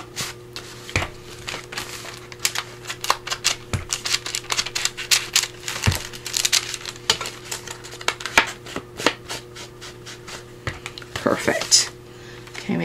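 Stiff paper and card of a handmade journal being handled, turned over and opened on a tabletop: a run of paper rustles and light taps, with a faint steady hum underneath.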